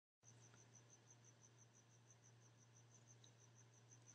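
Near silence: faint room tone with a low steady hum and a faint, high chirp repeating evenly about five times a second.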